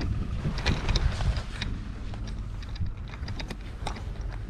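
Wind rumbling on the microphone, with scattered small clicks and knocks of the camera being handled as it moves about inside the boat.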